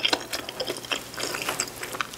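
A glass mug of carbonated cola being picked up and lifted: rapid small crackling clicks of the fizz and light knocks of glass.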